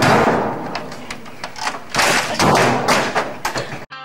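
A man hitting office computer equipment at his desk: a fast string of heavy thumps, bangs and crashes, loudest in a cluster at the start and again in the second half. It cuts off abruptly just before the end.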